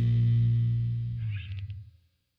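Closing chord of a hardcore punk song on distorted electric guitar, held and dying away, with a few faint clicks about a second and a half in.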